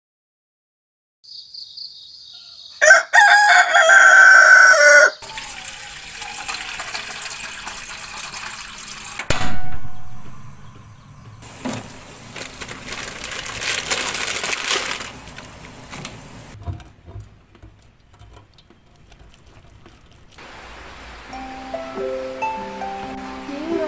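A rooster crowing once, loud, about three seconds in, with faint high chirps just before it. Then a long stretch of hiss and bubbling from a pot of water boiling on a stove, with a single knock partway through.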